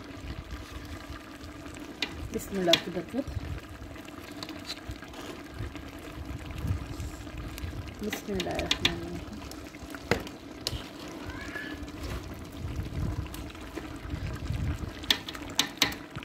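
A metal spatula scooping ghee into a large metal pot of cooking tripe, clicking and knocking against the pot a few times over the simmering of the pot's contents.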